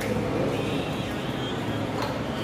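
Steady background hubbub of a crowded hall: an indistinct murmur of voices over a constant low hum.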